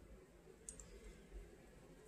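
Near silence: room tone, with one faint high click a little under a second in.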